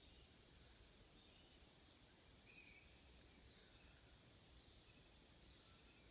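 Near silence: faint outdoor night ambience, with a few faint, brief high chirps, the clearest about two and a half seconds in.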